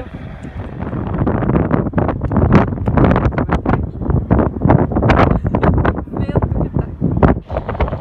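Strong wind buffeting the phone's microphone in loud, uneven gusts, building about a second in.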